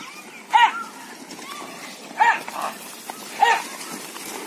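Three short, loud shouts of "Ah!", each rising and falling in pitch and coming about one to one and a half seconds apart: men calling to drive a yoked pair of bulls at a run.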